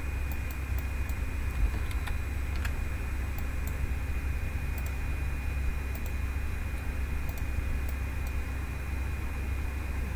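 Steady low hum and hiss of background noise with a faint steady high tone, and a few faint scattered clicks of a computer mouse.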